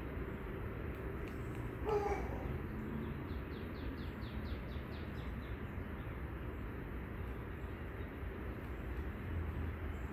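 Outdoor night background: a steady low rumble, with one short pitched call about two seconds in. Soon after comes a quick run of about ten faint, high chirps.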